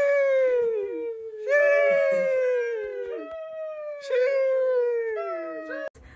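The soundtrack of a short TikTok meme clip: three long, howl-like high notes, each sliding slowly downward with a slight waver.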